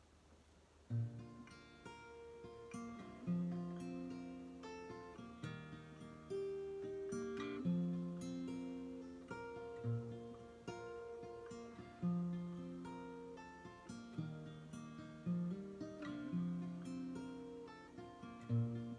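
Acoustic guitar playing a slow instrumental introduction, starting about a second in: picked notes ringing over a low bass note that returns about every two seconds.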